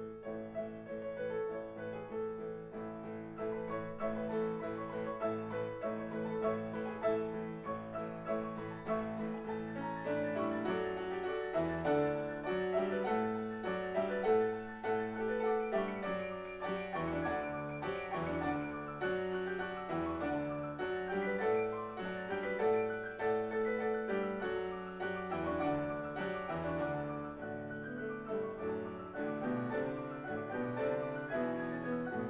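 Concert grand piano played four hands in a classical piece: slower held chords for the first ten seconds or so, then busier, quicker-moving figures.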